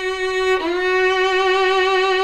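Solo violin, played with the left-hand fingers on their fleshy pads for a rounder, more resonant tone. A held note slides up into the next note about half a second in, and that note is sustained with vibrato.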